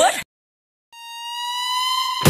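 Music cuts off abruptly, then after a brief silence a single high electronic tone fades in, swelling louder and rising slightly in pitch for about a second: a sound effect in an edit.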